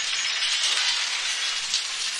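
Movie action sound effects: a steady, high-pitched hiss of noise with a few faint clinks, in the manner of crumbling or shattering debris.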